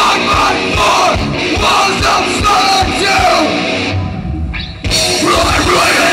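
Live heavy rock band playing loudly, with guitars, drums and yelled vocals. About four seconds in the sound thins and dips for under a second, then comes back all at once.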